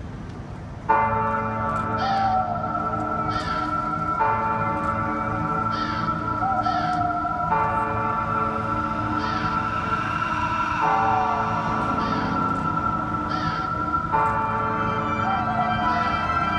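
A recorded pop song intro played through outdoor stage speakers starts suddenly about a second in: held keyboard chords that change about every three seconds, with short bright accents recurring over them.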